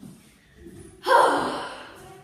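A person's sudden sharp gasp about a second in, fading away over the next second.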